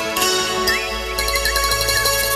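Live band playing a song introduction: bright, chiming high notes and short melodic phrases, with a low bass note coming in about half a second in.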